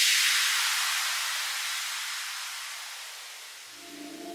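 A white-noise sweep used as a transition in an electronic music track: a hiss that slides down in pitch while fading away steadily. Quiet synth tones of the next track come in near the end.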